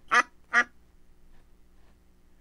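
A recorded duck quacking twice, about half a second apart.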